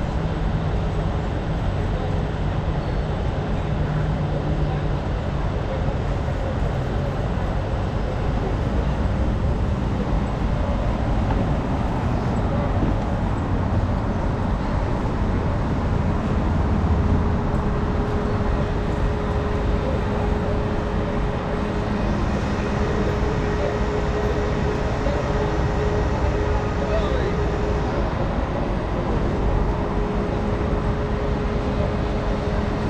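City street traffic: a steady wash of engine and tyre noise from passing and idling vehicles, with a steady humming tone joining in about halfway through.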